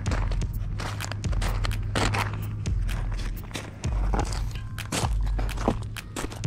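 Footsteps crunching on a gravel path, over a steady low rumble.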